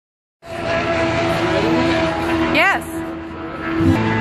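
Amplified guitars ringing long sustained notes as a live band is about to start a song, with a brief swooping pitched call about two and a half seconds in and a low bass note coming in near the end.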